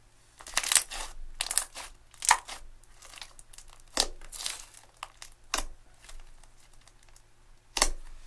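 Hands stretching, folding and poking a lump of thick green slime, heard as about six short, irregular bursts of sticky handling noise, with a sharp one near the end.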